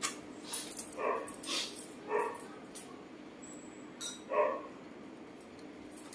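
Short, soft vocal calls from macaques at the table, a few of them spaced a second or two apart, among light clicks.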